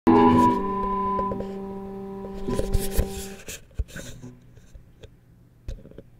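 Electric guitar chord ringing out and fading, with a few knocks, then muted about three and a half seconds in; scattered faint clicks and knocks of handling follow.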